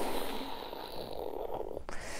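A woman's drawn-out raspy vocal sound effect, lasting most of two seconds and cutting off sharply near the end, imitating the gush of ink from an overfilled glass dip pen on its first line.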